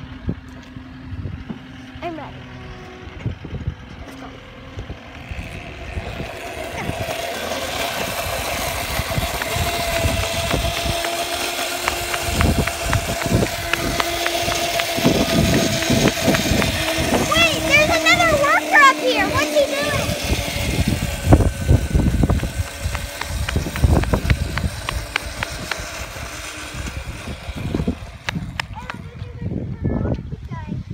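Electric scooter ridden along an asphalt street, its motor whining steadily for about fifteen seconds from around six seconds in. Wind rushes over the phone's microphone with tyre rumble.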